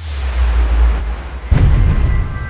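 Logo-sting sound effect: a deep rumbling swell that breaks into a heavy boom about one and a half seconds in.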